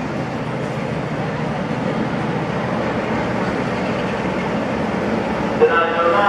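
A pair of class 47 diesel locomotives with Sulzer 12-cylinder engines drawing slowly into a station platform with a charter train: a steady engine rumble that grows a little louder as they approach. Voices start near the end.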